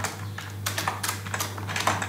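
Computer keyboard keystrokes: about eight separate key clicks in two seconds, over a steady low hum.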